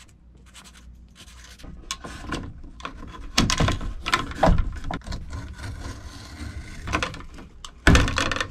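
Sheathed electrical cable being pulled and pushed through a plastic electrical box and along wooden studs: irregular rubbing and scraping of cable sheathing on plastic and wood. A single sharp knock comes near the end.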